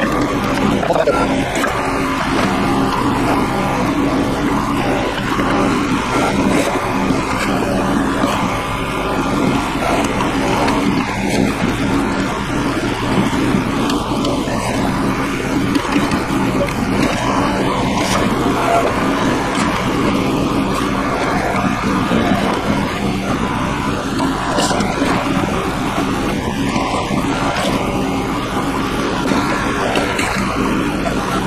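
The small gas engine of a towable mini backhoe runs steadily, driving the hydraulics while the boom and bucket dig in wet mud and rock.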